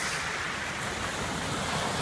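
Small waves washing in over sand and pebbles: a steady rush of surf.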